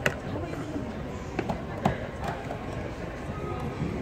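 Indistinct voices echoing around a school gymnasium, with four sharp knocks in the first two and a half seconds: a basketball bouncing on the hardwood court.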